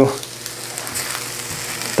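Diced onions frying in a cast iron skillet and a carbon steel pan, a steady soft sizzle. The onions are well along in browning, soft and turning jammy.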